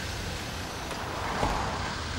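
Road traffic noise: a steady low rumble of vehicles, swelling briefly about a second and a half in.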